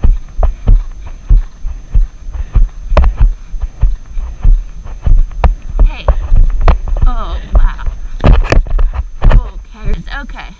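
Horse cantering on arena sand, heard from the saddle: a steady rhythm of low hoof thuds, about three a second, with sharp knocks from the camera and tack jostling and a constant low wind rumble on the microphone.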